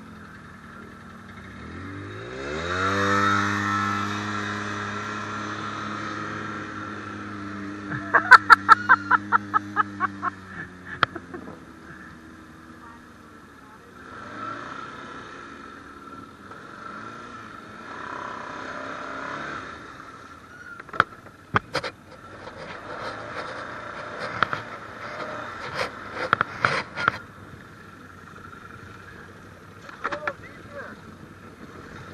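An ATV engine revs up about two seconds in and holds at steady high revs, then drops back about ten seconds in. A quick, even run of sharp knocks comes just before the drop. After that come lower engine noise and scattered sharp knocks.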